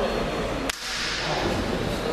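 A single sharp crack about two-thirds of a second in, over the background murmur of voices in a large hall.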